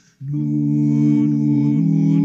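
Music: sustained, wordless vocal notes sung into a microphone, several held tones layered together, starting after a brief gap at the very beginning.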